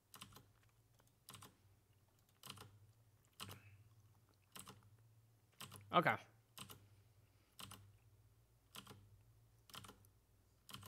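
Single keystrokes on a computer keyboard, spaced about once a second, over a faint steady low hum.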